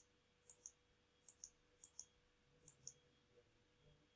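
Computer mouse button clicked four times, each click a faint quick double tick of press and release, roughly one click every two-thirds of a second, as numbers are entered on an on-screen calculator.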